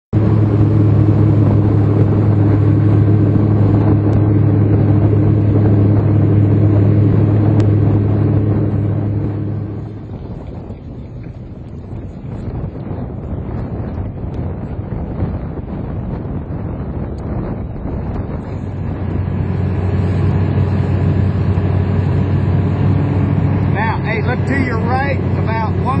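Boat's outboard motor running steadily. About ten seconds in it drops away, leaving a quieter stretch of wind and water noise, and it picks up again about nine seconds later.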